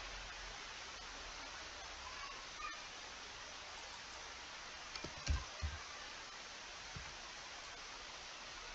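Faint steady background hiss, with a few soft low thumps about five seconds in and one more near seven seconds.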